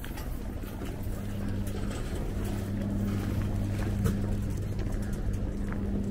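Busy city-square ambience: a steady low mechanical hum swells in about a second in and holds, over a general street noise with a few sharp clicks.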